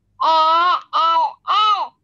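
A child's voice over a video call, answering in three drawn-out syllables, each rising and falling in pitch.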